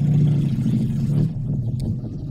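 Steady low hum of a car's idling engine, heard inside the cabin, a little louder in the first second, with a few faint clicks near the end.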